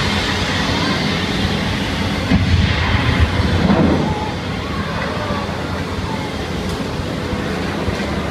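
Flame effects on a theme-park special-effects set: a steady rush of noise with a deep rumble that swells for a second or two about two and a half seconds in.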